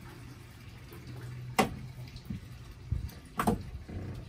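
Two sharp clicks from plastic cable plugs being handled, about a second and a half apart, over a steady low hum.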